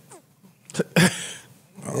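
Speech in a conversation between men: a short spoken word about a second in, just after a brief vocal sound, with quiet gaps around them.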